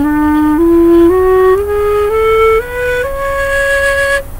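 End-blown flute in D diatonic minor playing its diatonic scale, going up one note at a time, about two notes a second, and holding the top note for about a second at the end.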